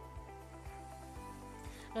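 Soft background music with a steady beat, about two beats a second.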